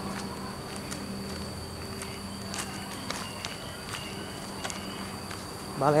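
Scattered footsteps on a gravel yard over a steady high insect buzz and a faint low hum that fades out about halfway.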